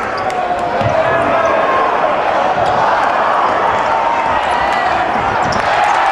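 A basketball being dribbled on a hardwood court, a few low bounces, over the steady noise of an arena crowd with voices.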